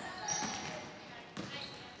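Basketballs bouncing on a hardwood gym floor during practice, one sharp bounce standing out about a second and a half in, with faint voices echoing in the hall.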